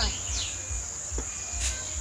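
A steady, high-pitched insect trill, with irregular low thumps underneath.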